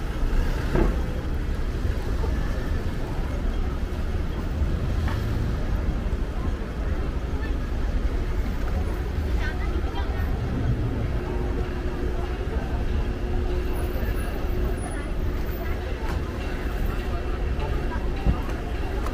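City street ambience: steady traffic noise with the voices of people passing by.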